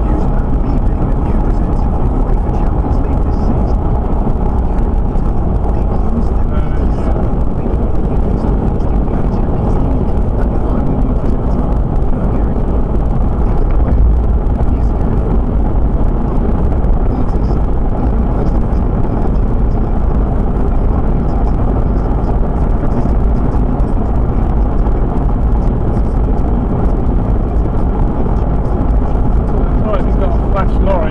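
Steady road and engine noise heard inside a car's cabin while it drives along a motorway at speed, a low, even rumble with no sudden sounds.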